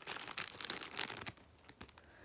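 A Roysters crisp packet being pulled at and torn open by hand, the plastic crinkling and crackling rapidly for just over a second before dying down.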